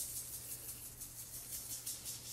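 Salt canister being shaken over paper, the salt grains rattling faintly as they are sprinkled out.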